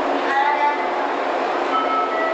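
JR West 115 series 3000 electric train pulling out along the platform: a steady running noise with a whine that rises briefly about half a second in, then holds steady.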